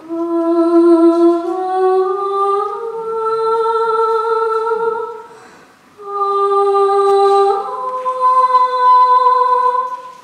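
A high voice humming or singing without words: long held notes that step upward in pitch, in two phrases with a short break about halfway through.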